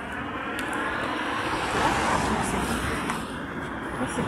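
A vehicle passing on the road, its noise swelling to a peak about halfway through and then easing.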